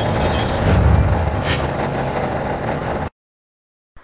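Cinematic intro sting: dense mechanical clanking sound design with deep booms, cutting off suddenly about three seconds in and followed by about a second of silence.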